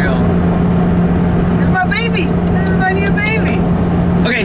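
Lotus Elise Club Racer's mid-mounted four-cylinder engine and road noise heard from inside the cabin while driving, a steady drone that holds one pitch throughout.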